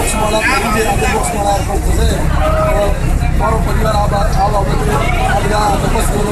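A man speaking continuously into interview microphones, over crowd babble and a steady low rumble.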